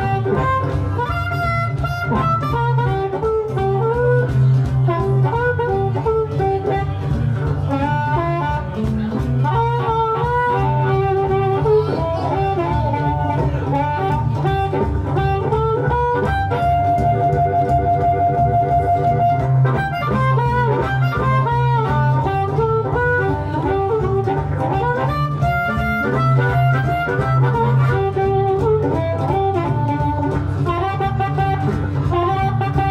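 Blues harp (harmonica) playing an instrumental break over a steady guitar rhythm, the harp bending notes and holding one long note a little past the middle.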